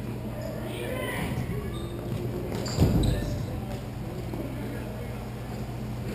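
Inline hockey rink ambience in a large hall: a steady low hum, distant players' shouts and the clatter of play. There is one sharp knock about three seconds in.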